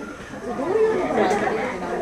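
Several people's voices talking at once in the background, indistinct chatter that swells about halfway through.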